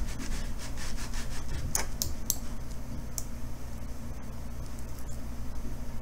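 Computer mouse sliding across a desk or mousepad while erasing in an image editor, with four short clicks between about one and a half and three seconds in, over a steady low hum.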